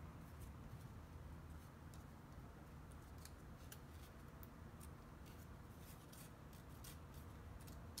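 Faint crackling of paper petals being curled around a wooden skewer stick: scattered small ticks that come more often in the second half, over a low steady hum.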